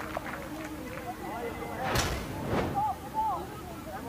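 Field sound at a soccer match: players' voices calling over a steady outdoor background, with one sharp thud about halfway through as the corner kick is struck.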